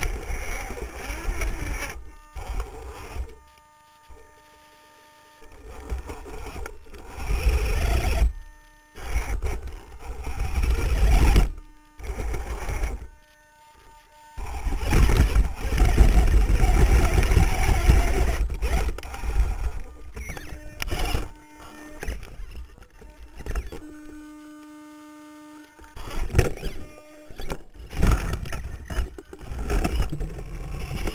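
On-board sound of an RC rock crawler with dual 35-turn brushed electric motors, driven in short bursts with the chassis and tyres scraping and knocking over rock. In the pauses between bursts a faint steady whine remains.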